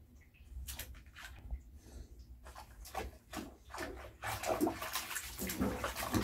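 Bathwater splashing and sloshing in a bubble-filled tub as a baby moves about in it: a run of short splashes, sparse at first and coming thicker and louder over the last couple of seconds.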